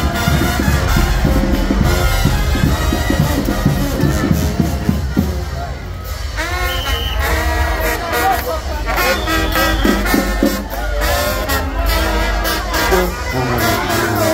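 Second-line brass band playing a street groove: a driving drum and tuba beat under trumpets and other horns, with crowd voices close by. The low beat drops back about six seconds in, leaving the horns and voices more to the fore.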